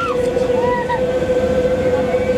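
Steady machinery hum inside a tourist submarine's cabin, with one constant droning tone. Two short, high, rising-and-falling squeals come through at the start and just under a second in.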